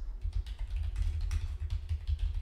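Typing on a computer keyboard: a quick, uneven run of key clicks over low thuds.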